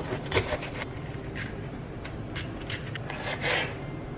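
Chef's knife slicing a green bell pepper on a plastic cutting board: a string of irregular short cuts, the blade crunching through the pepper and scraping against the board.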